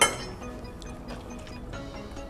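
A single sharp clink of metal cutlery against a ceramic plate at the very start, ringing briefly, with soft background music running under it.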